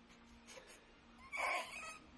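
A newborn baby gives a short fussy cry, about a second and a half in, with the bottle at its mouth.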